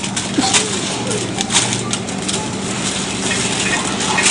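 Plastic packaging rustling and crinkling in irregular bursts as packaged goods are taken off a shelf and put into a shopping basket, over a steady low hum.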